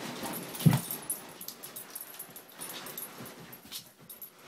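Siberian husky puppies play-fighting: irregular scuffling and bumping with small dog noises, and a sharp thump less than a second in.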